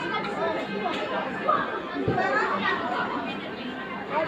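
Indistinct background chatter of several people's voices, with one short dull thump about halfway through.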